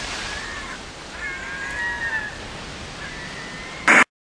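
Produced intro sound effects: a steady windy hiss with a few faint gliding bird calls in the middle, ending in a short loud burst as the title card switches off.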